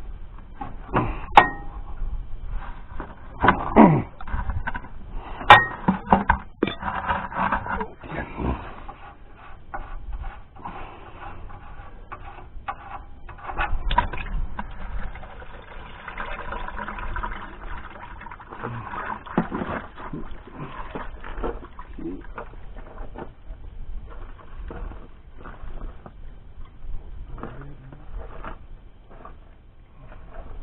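Wrench working the drain plug on an International Super W-6 tractor's oil pan: scattered metal clicks and knocks, thickest in the first several seconds and sparser after.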